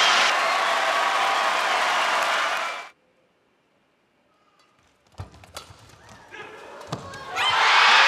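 Arena crowd cheering and applauding, cut off abruptly about three seconds in. After a couple of seconds of silence comes a quiet rally with a few sharp racket strikes on the shuttlecock, and the crowd erupts into cheers again near the end as the match-winning point falls.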